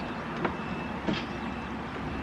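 Steady outdoor background noise with a low hum and a couple of faint light taps.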